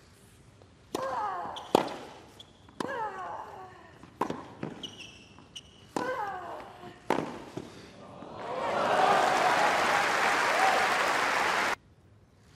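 Tennis rally on a hard court: a serve and about five more sharp racket-on-ball hits, several of them with a player's grunt. Crowd applause for the point then swells and cuts off abruptly just before the end.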